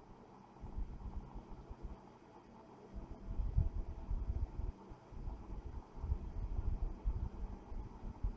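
Faint, uneven low rumble that comes and goes, quietest in the first three seconds, over a faint steady hum.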